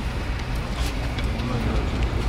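Outdoor background of a steady low rumble, with faint murmuring voices of a gathered group and a few light clicks.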